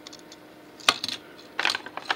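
Small metal-and-plastic clicks of a die-cast toy pickup being handled and turned over in the fingers: one sharp click about a second in, then a short clatter of clicks near the end.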